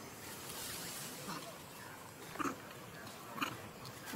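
Macaques giving three short calls about a second apart over a steady background hiss.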